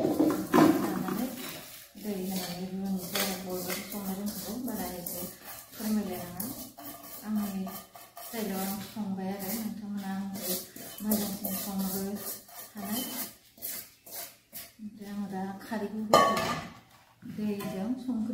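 A woman talking while a metal bowl and cooking pot clink and scrape against each other, with a louder clatter about sixteen seconds in.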